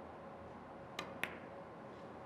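Carom billiard shot: the cue tip strikes the cue ball with a sharp click about a second in, and a quarter second later the cue ball hits another ball with a louder, ringing click.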